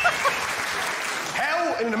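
A theatre audience applauding and laughing, an even clatter of clapping. A woman's laugh trails off in the first moment, and a man's voice takes over near the end.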